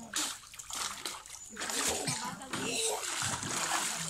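Water splashing in a hot spring pool, with people's voices in the background.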